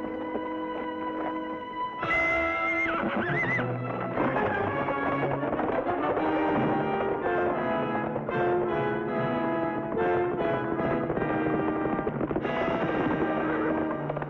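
Dramatic orchestral score that turns suddenly louder and more agitated about two seconds in, with a horse whinnying over it as the horse is spooked and rears, and hoofbeats.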